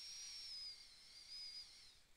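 Near silence: faint hiss with a thin, high, slightly wavering whistle that fades near the end.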